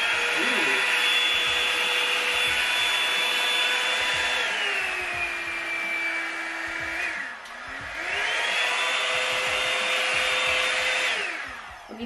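Revlon One-Step hair dryer brush's fan motor running with a steady whine. It drops to a lower speed about four seconds in, nearly stops around seven seconds in, then spins back up to full speed and winds down to off near the end.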